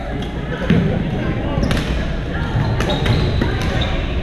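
Sharp hits of rackets on the shuttle or ball from several courts, echoing in a large gym over a steady murmur of players' voices.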